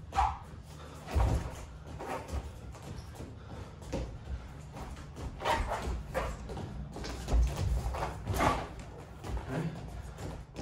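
Two wrestlers' feet stepping and stomping on foam wrestling mats, with scuffs and body contact while drilling snap-downs: a string of soft thumps every second or so.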